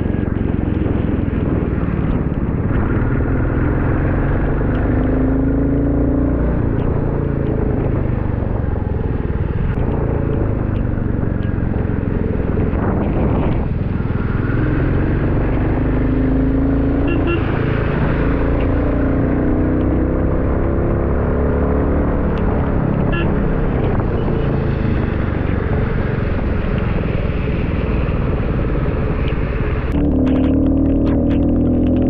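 Royal Enfield Classic 350's single-cylinder engine running under way, its pitch rising and falling several times as the bike speeds up and slows, under steady wind noise on the camera's built-in microphone.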